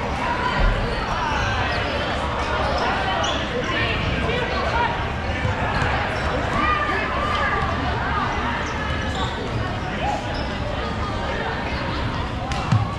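Dodgeballs bouncing and hitting the hard gym floor and players during play, with many players' voices and calls echoing around a large sports hall.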